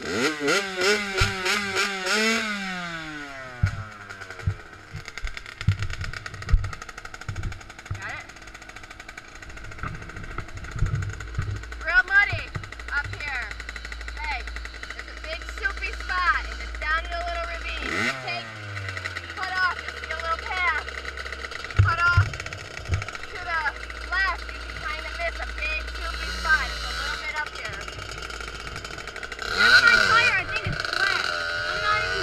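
Dirt bike engine revving for about two seconds, then falling back to a low, steady idle. About 18 seconds in it gives a short blip that drops away again.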